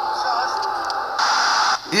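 The remix video's soundtrack playing through computer speakers and picked up by the camera: a faint, tinny voice over a steady hiss. About a second in there is a half-second burst of loud hiss that then cuts off.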